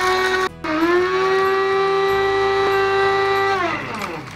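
Electric blade coffee grinder running with a steady whine while grinding dried chili peppers and seeds into powder. It cuts out for a moment about half a second in, spins back up, and winds down with a falling pitch near the end.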